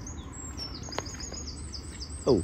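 Small songbirds chirping in a quick run of short, high, downward-sliding notes, with one sharp click about halfway through.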